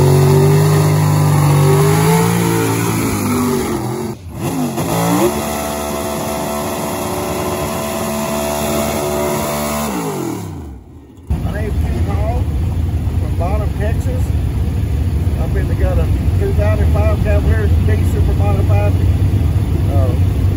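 Drag race cars' engines revving in short separate clips. First come a few seconds of revs rising and falling. Then revs are held high for a burnout and wind down near the ten-second mark, and the last part is a steady low engine rumble with voices over it.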